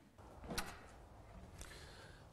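Quiet room tone with a short, light click about half a second in and a fainter one shortly before the end.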